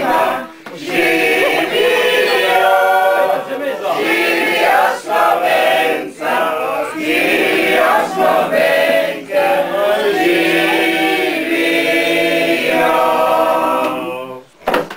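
A group of people singing a song together unaccompanied, several voices at once.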